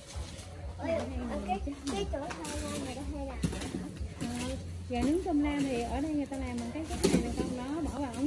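Voices talking, children's among them, with no clear words, over a steady low rumble.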